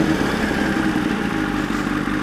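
Sport motorcycle engine running steadily at low revs while the bike rolls slowly, heard from on the bike.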